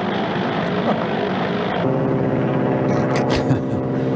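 Ercoupe light plane's propeller engine running. At first it is a rushing noise, then about halfway in it settles into a steady drone with a clear low pitch.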